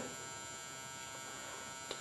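A 400-watt high-pressure sodium (HPS) grow light buzzing with a faint, steady electrical hum while the lamp is still warming up and not yet fully lit.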